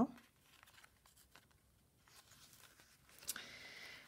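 Paper pages and card flaps of a handmade journal handled and turned by hand, faint at first, then a sharper rustle near the end.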